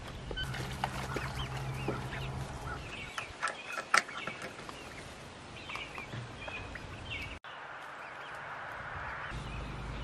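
Young chickens chirping and clucking in short scattered calls as they peck at Japanese beetles tipped into their water dish, with a few sharp taps, the loudest about four seconds in. After a break about seven seconds in, only a faint steady hiss.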